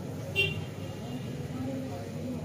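Background traffic and indistinct voices, with a single short high-pitched horn toot about half a second in.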